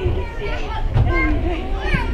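Footballers shouting to each other on the pitch during an attack in front of goal, over a steady low rumble, with a single thump about a second in.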